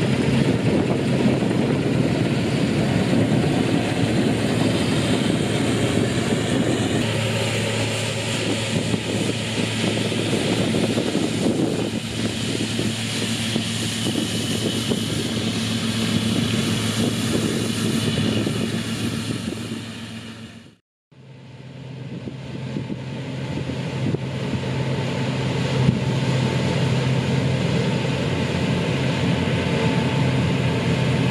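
Massey Ferguson 40 RS combine harvester running steadily while cutting wheat, a continuous engine and threshing drone with a low hum. The sound fades out to silence for a moment about two-thirds through, then comes back.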